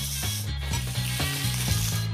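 Tomatoes sizzling as they stir-fry in a hot pan, with background music carrying a low bass line underneath.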